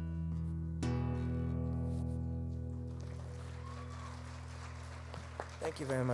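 Amplified acoustic guitar's closing chord strummed about a second in and left to ring, fading slowly. Near the end the audience starts clapping.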